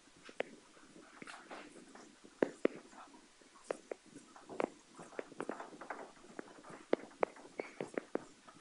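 Chalk writing on a blackboard: an irregular run of sharp taps and clicks, a few a second, with faint scratching between them, as a formula is written out.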